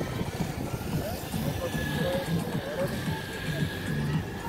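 Indistinct voices of people talking nearby, no words clear. A faint steady high tone comes in about a second and a half in.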